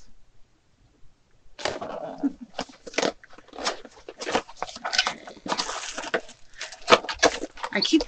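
A small cardboard product box being opened and its contents unpacked by hand. A quick, busy run of rustles, scrapes and crinkles starts about a second and a half in, after a near-quiet start.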